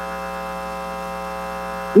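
Steady electrical mains hum, a buzz of several even tones that holds without change.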